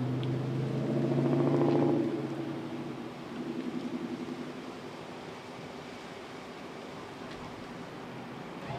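A motor vehicle engine running nearby, swelling to its loudest a second or two in and then fading, with a weaker second swell a few seconds later.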